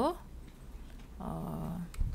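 A person's brief wordless hum, about a second in, then a single mouse click near the end.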